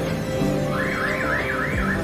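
An electronic warbling alarm tone, like a car alarm, that starts under a second in and sweeps up and down about three times a second, over background music.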